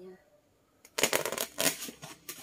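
A white foam disc handled by hand and set onto a plastic bouquet core: a dense run of scratchy rustling and scraping that starts about a second in.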